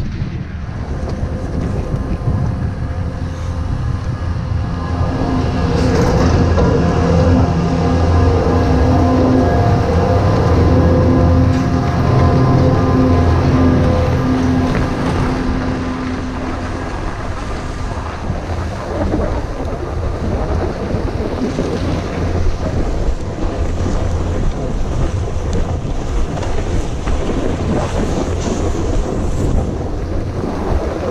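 Wind buffeting an action camera's microphone, with a snowboard scraping over packed, tracked snow. Through the middle a steady droning hum sits beneath it, then gives way to rougher scraping and rumble.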